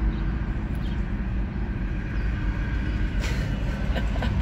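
Steady low rumble of vehicle engines and road traffic.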